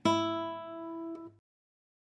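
Flamenco guitar's open first string, tuned to E, plucked once and left ringing as the last string of the drop-D Rondeña tuning (D-A-D-F#-B-E). The note fades, then cuts off suddenly about a second and a half in.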